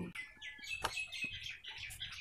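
Faint chirping of small birds: a run of short, high calls.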